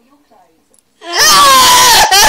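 A loud, drawn-out wailing cry that starts about a second in and wavers in pitch, breaking off briefly near the end.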